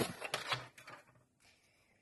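Sliding-blade paper trimmer drawn along its rail, cutting a thin strip of embossed paper: a short scraping slide with a click in it, fading out within the first second.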